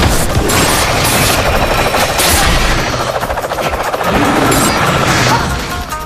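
Film fight-scene soundtrack: a loud, rapid crackling rattle of impact effects mixed with dramatic score music, with the music coming through more clearly near the end.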